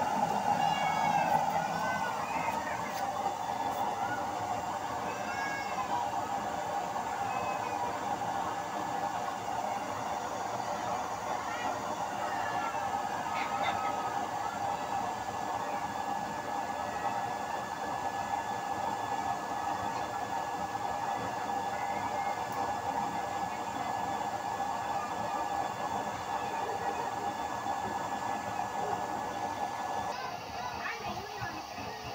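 Electric blower fan running with a steady hum, forcing air into a homemade used-oil burner stove that is burning with the flame lit.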